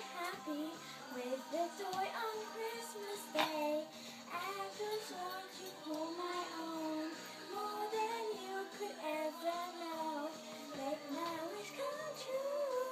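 A young girl singing a Christmas song over a recorded backing track.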